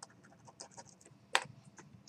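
Faint, scattered computer keyboard clicks, with one sharper, louder click about two-thirds of the way in.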